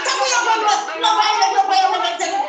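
Speech only: a voice talking without a pause.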